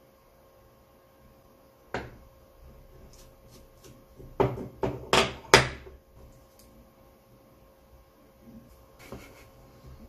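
Hands handling an aluminium RC skid plate, a screwdriver and small parts on a desktop: a sharp click about two seconds in, then a quick run of four or five loud knocks around the middle, and a lighter knock near the end.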